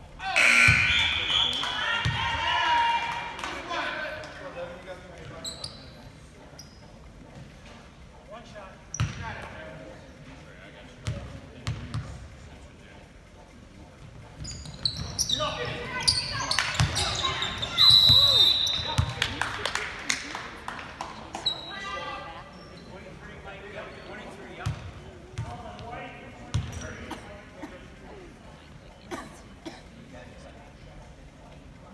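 Basketball game sounds in a gym. Crowd and player voices swell loudly for a few seconds as a free throw goes up, and a basketball bounces on the hardwood court at intervals. A little past halfway a second loud surge of shouting comes with a short referee's whistle blast.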